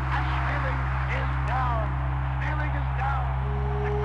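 Indistinct voices of an old radio boxing broadcast over a steady low hum.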